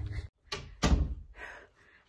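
Two sudden thumps: a light knock about half a second in, then a much louder one just under a second in that dies away over about half a second.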